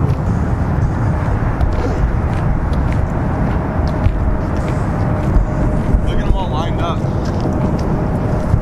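Loud, steady low rumbling noise throughout, with a faint steady hum from about three seconds in and brief voices around six to seven seconds in.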